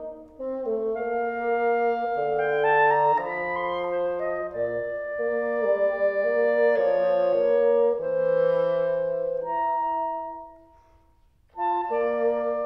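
Clarinet and bassoon playing a slow classical duet in held, flowing notes. About ten seconds in the music dies away to a short pause, then both instruments come back in.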